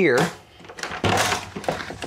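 Travel trailer entry door being unlatched and pushed open: a few short latch clicks and a brief rush of noise as the door swings out.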